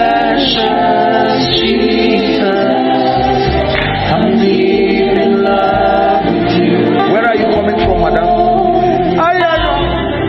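Gospel choir singing a sustained worship song over instrumental backing.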